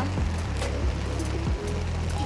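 Background music with a steady bass line, over the hiss of falling rain.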